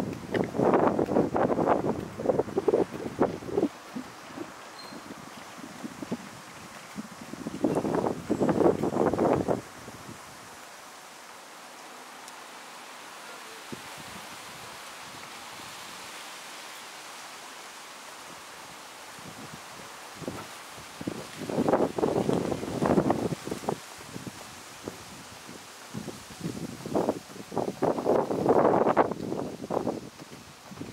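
Wind rustling against the microphone in four bursts of a couple of seconds each: near the start, about eight seconds in, about twenty-two seconds in and near the end. Between them lies a steady faint hiss of outdoor city ambience.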